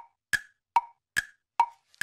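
A waiting-time sound effect of short pitched clicks, about two and a half a second, evenly spaced and steady in level: a cue marking the pause while viewers call out their guesses.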